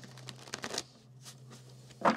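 A tarot deck being shuffled by hand: several short, quick strokes of cards sliding and flicking against each other, the loudest about half a second in. A faint steady low hum runs underneath.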